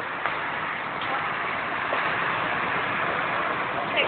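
Four-axle DAF truck driving past on a city street, heard as a steady rumble of engine and tyre noise mixed with traffic.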